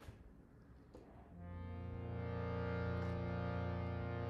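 A steady instrumental drone fades in about a second and a half in and swells slowly, a held chord of sustained tones that sets the pitch for the opening chant.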